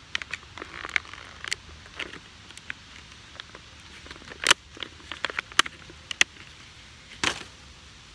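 A plastic small hive beetle trap being handled: irregular sharp plastic clicks and crackles, the loudest about four and a half seconds in and again near the end.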